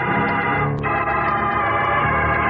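Organ music bridge between scenes: sustained organ chords, moving to a new chord a little under a second in.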